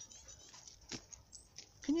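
A few short, faint, high-pitched calls from a blue tit, a call the listener has never heard the species make.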